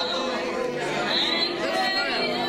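Several people praying aloud at once, their voices overlapping into an indistinct murmur of speech.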